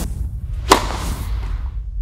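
Logo-intro sound design: a steady deep bass drone with swooshes, and one sharp hit with a short ringing tail less than a second in.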